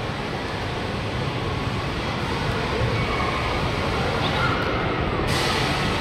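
Steady rumble and hiss of a spinning amusement ride running, with faint voices of the crowd behind, slowly growing louder; a brighter hiss sets in about five seconds in.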